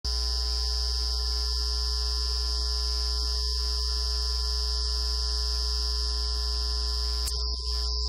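Steady electrical mains hum with a high-pitched whine above it, with a click near the end.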